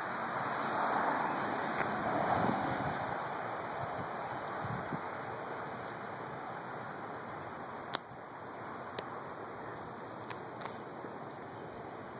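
Outdoor ambience: an even rushing noise, strongest in the first few seconds and then easing off. Faint bird chirps come about once a second, with a couple of light clicks past the middle.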